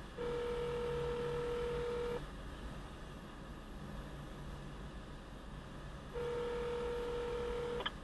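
Telephone ringback tone heard through a phone's speaker: two steady rings, each about two seconds long, about four seconds apart. The transferred call is ringing at the other end and has not yet been answered.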